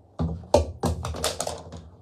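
A fabric garment rustling and brushing hard against a close microphone as it is pulled up over the head, a rapid run of loud scuffs and bumps lasting about a second and a half.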